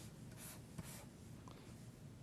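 Faint strokes of a felt-tip marker on paper as it draws short straight lines.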